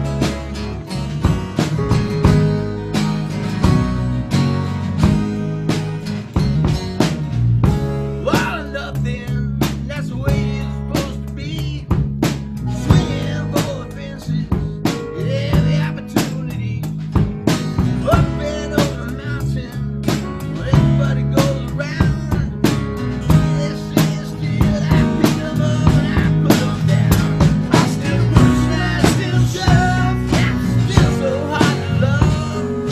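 A rock band playing a song live: strummed acoustic guitars over bass, with a drum kit keeping a steady beat.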